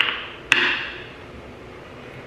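Plastic cap of a shampoo bottle being snapped open: two sharp clicks, the second one about half a second in and louder.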